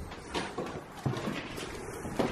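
Footsteps on a debris-littered floor: several uneven steps with scuffs, each a short knock.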